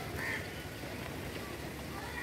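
Steady rain with a city hum behind it, and one short bird call, much like a duck's quack, about a quarter of a second in.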